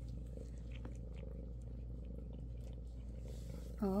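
Bengal mother cat purring steadily and low as she nurses her kittens.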